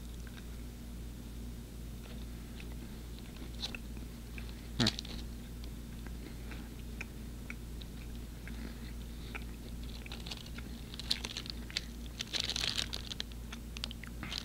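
Quiet chewing of a soft, caramel-filled stroopwafel, with faint scattered mouth clicks and one sharper mouth sound about five seconds in. Near the end, a plastic wrapper crinkles in the hand.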